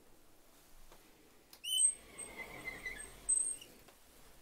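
Louvered wooden bifold closet door being opened, its hinges or track rollers giving a sharp high squeak about halfway through, then a thin whine and scraping. A second louder squeak comes near the end.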